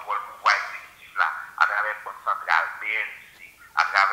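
Speech only: a person talking continuously in a thin voice with no low tones.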